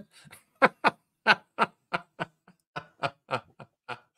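Quiet laughter: a string of short chuckles, about three a second, growing fainter toward the end.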